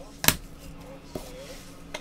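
A sharp plastic click about a quarter of a second in, then a softer click just past a second, as trading cards in hard plastic holders are handled and set down.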